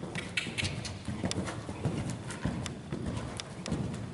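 Horse cantering on soft sand arena footing: a steady rhythm of muffled hoofbeats with many sharp clicks among them.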